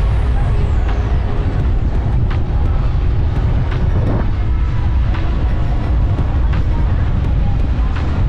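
Wind buffeting the microphone in the open air: a loud, steady low rumble, with a few faint tones and light ticks over it.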